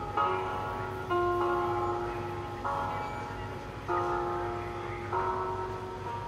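Spooky music from a haunted-piano Halloween decoration: a slow series of held chords, each struck and left to fade, with a new one about every second and a quarter, over a low steady hum.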